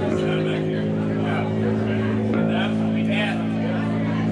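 Guitar and bass amplifiers droning on held low notes between songs, the pitch shifting a couple of times, with crowd chatter over it.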